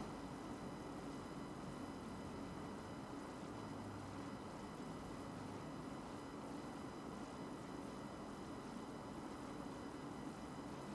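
Quiet, steady room tone: a faint even hiss with a few thin, steady high-pitched tones and no distinct sounds.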